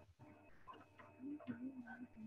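Faint computer mouse clicks, a few separate ticks, while a table is edited on a computer during a video call. A faint drawn-out voice is in the background in the second half.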